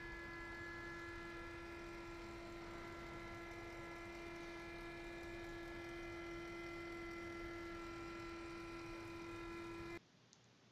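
Steady hum of the fuel pump motor on a diesel fuel demonstration stand, pumping fuel through the sight-glass lines. It is one clear, even tone with fainter higher tones above it, and it cuts off suddenly at the end.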